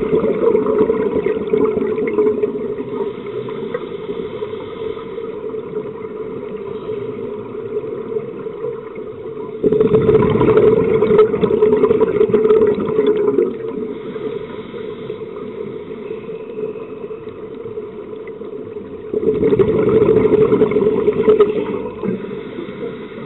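Scuba diver's regulator exhaling underwater: loud rushing bubble bursts of three to four seconds, one fading early on, one about ten seconds in and one near the end, with a steady hum between them.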